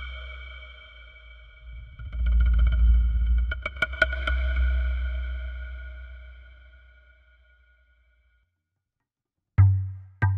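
ATV aFrame electronic hand percussion played with the hands through a ringing DSP voice: several held tones over a deep low hum swell up about two seconds in, with a few sharp taps around four seconds, then ring out and fade away. Just before the end a single hard strike brings a deeper, drier thump.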